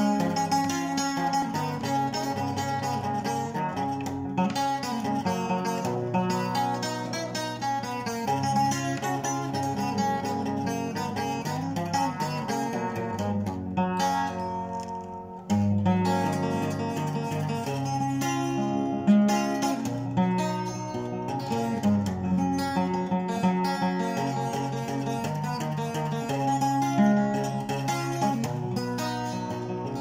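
Acoustic guitar being picked, playing an instrumental passage of held chords and single notes; it drops to a softer passage about halfway through, then comes back in fuller.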